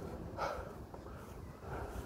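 A man breathing hard after running: a short exhale about half a second in and a softer breath near the end, over a low rumble of wind or handling on the phone microphone.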